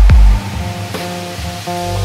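Electronic music: a heavy, deep kick drum thump right at the start, then held melodic notes, with a loud low bass swelling in near the end.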